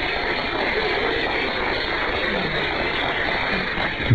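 Studio audience applauding steadily, heard over a radio broadcast with the treble cut off.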